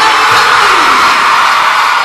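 A large crowd of children cheering and shouting together, a loud, steady din.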